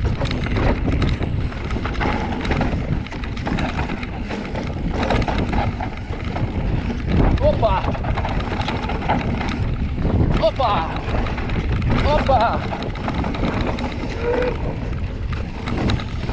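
Mountain bike descending a rough dirt trail, heard from a camera mounted on the rider: constant wind buffeting on the microphone with steady rattling and clatter from the bike and tyres over the ground. A few short voice calls break through now and then.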